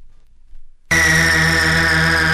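Early gabber hardcore track: after a short near-silent pause, a loud, harsh synthesizer tone cuts in about a second in and holds at one steady pitch.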